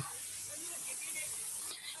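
Steady hiss of background noise, with no other sound standing out: a pause between a speaker's sentences in a microphone recording.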